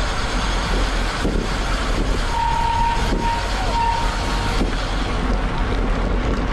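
Wind buffeting the microphone with a steady low rumble from riding a road bike at about 20 mph in a race pack. About two seconds in, a steady high beep sounds for about two seconds, broken once.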